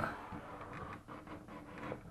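Faint rubbing and a few light knocks of wood as a plywood panel edge is pushed into a snug-fitting wooden pocket.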